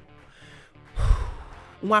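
A man's quick, audible breath close to a studio microphone about a second in, the rush of air giving a brief low rumble on the mic and fading over most of a second.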